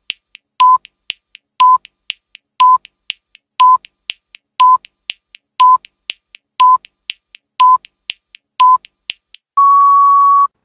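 Quiz countdown timer sound effect: a short electronic beep once a second with two faint ticks between beeps, ending in one longer, slightly higher beep as the time runs out.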